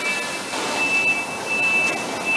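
Garment-factory floor noise: industrial sewing machines running, with a high whine that cuts in and out in short spells of about half a second, over a steady hiss of machinery.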